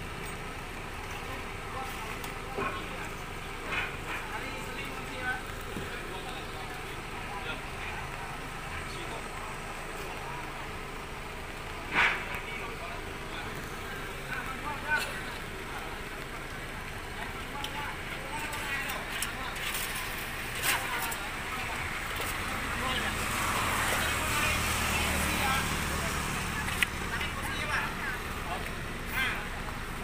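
Background voices of people, with scattered knocks and clatters of broken metal and timber debris, the loudest about twelve seconds in. A low rumble swells near the end.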